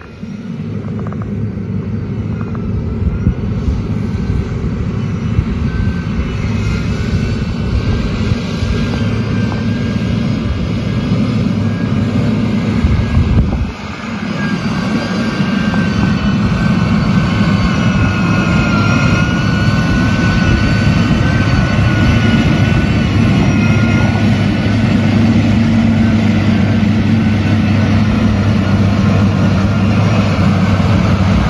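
Motor grader's diesel engine running steadily while grading soil: a continuous low drone with a higher, wavering whine above it. The sound drops out briefly about fourteen seconds in, then carries on.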